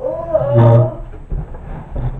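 A woman's voice making one drawn-out, wordless vocal sound lasting about a second, loud and gravelly enough to pass for a roar, followed by quieter sounds.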